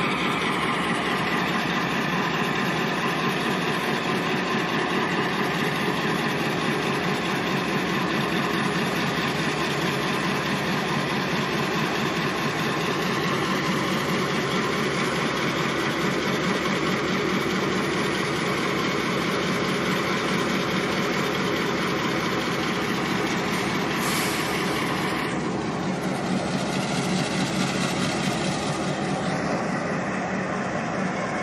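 Diesel locomotive engine running steadily as the locomotive rides a turning turntable.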